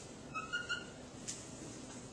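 Dry-erase marker squeaking on a whiteboard while writing: three short, high squeaks about half a second in, then a faint tap.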